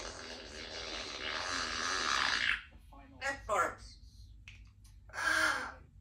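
Congo African grey parrot vocalising: a long, breathy, raspy sound lasting nearly three seconds, then two short chattering calls a couple of seconds apart.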